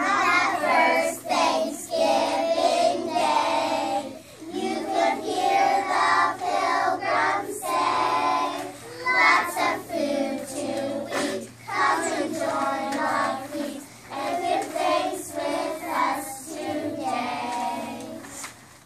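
A group of young children singing a song together, phrase after phrase with short breaks between lines.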